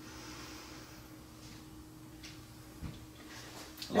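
Quiet room tone with a steady low hum, broken by a few faint short clicks.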